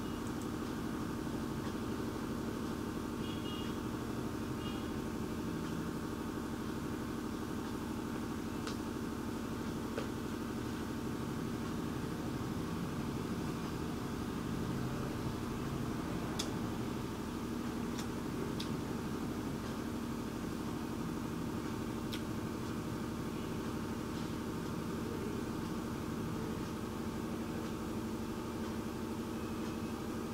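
Steady low background hum of room and equipment noise, with a few faint isolated clicks scattered through it.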